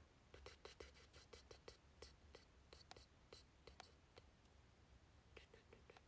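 Near silence in a small room, with a run of faint, irregular soft clicks, about three or four a second, over the first four seconds and a couple more near the end.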